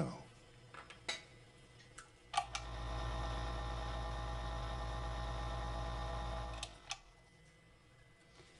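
A few light clicks, then a machine hum that runs steadily for about four seconds, starting about two and a half seconds in and stopping suddenly, with a click as it stops.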